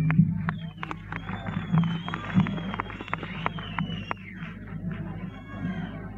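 Live-concert audience between songs, heard through a cassette recorder's built-in microphone: scattered handclaps and a long, slightly wavering high whistle that stop about four seconds in, over a steady low amplifier hum.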